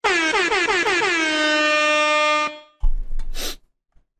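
DJ air-horn sound effect from a soundboard: a quick run of short blasts that settles into one long held blast, cutting off abruptly after about two and a half seconds. A brief thump follows.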